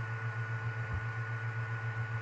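A steady low hum with a faint, thin higher whine above it, wavering slightly in loudness.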